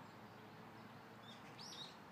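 Near silence with a faint outdoor background hush and a faint short bird chirp about one and a half seconds in.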